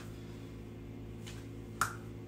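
A single sharp snap-like click near the end, preceded by a fainter tick, over a low steady hum.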